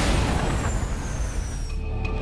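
Title-sequence whoosh sound effect: a loud hissing sweep with a thin high whistle falling in pitch, over a low rumble. Near the end the theme music comes back in.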